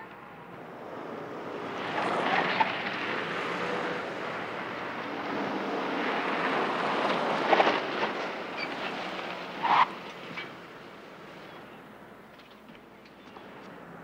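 A car driving along a street: engine and road noise that swell through the middle and die down over the last few seconds as it comes to a stop, with a short sharper sound about two-thirds of the way through.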